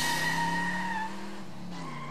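A car engine running, dropping slightly in pitch and fading slowly, with a tire squeal that stops about a second in.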